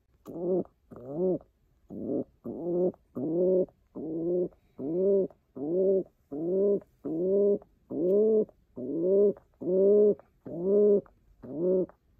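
White domestic pigeon cooing in a steady run of short coos, about two a second, each rising and then falling in pitch, with a brief pause about a second and a half in.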